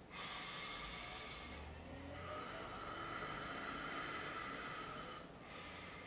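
A man breathing slowly and deeply: one breath of about a second and a half, then a longer one of about three seconds, as a medium settles into trance before channeling.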